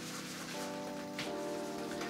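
Soft background music of sustained chords, changing about half a second in and again near the middle. Under it a faint, even swishing, a shaving brush being swirled on a hard triple-milled soap puck to load it.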